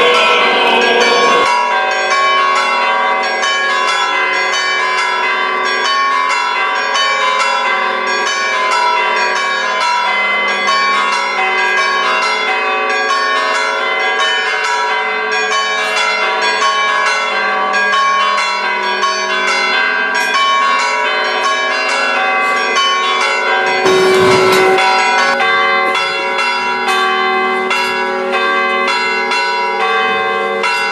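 Church bells pealing continuously, several bells of different pitches struck in quick, even succession. A brief low rumble about three-quarters of the way through.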